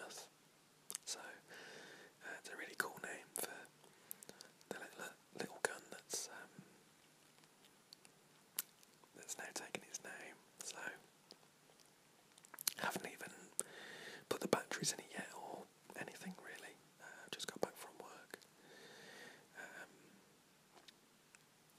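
A man whispering in short breathy phrases with pauses between them.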